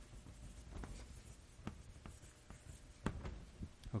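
Chalk writing on a blackboard: a series of short scratching strokes and taps as letters are written, the strongest about three seconds in.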